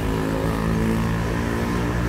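A motor vehicle's engine running close by, its pitch rising a little early on and then holding steady.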